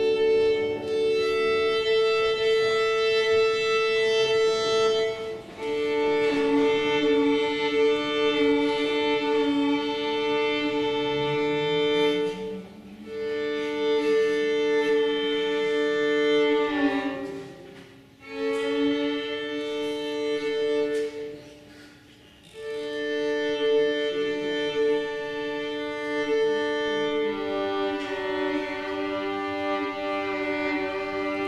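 Violin being tuned: long bowed double stops on open strings a fifth apart, each held for several seconds with brief breaks between bow strokes, then moving to a lower pair of strings near the end.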